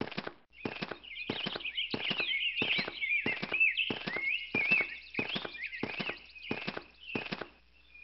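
Cartoon footstep sound effects, an even walk of about two steps a second that stops shortly before the end, with high twittering chirps over them.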